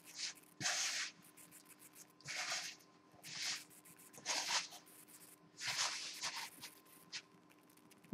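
Hands squeezing and pressing crumbly pie dough in a plastic mixing bowl, giving about six short rustling, crunching strokes roughly a second apart. The dough is still dry and crumbly, not yet holding together.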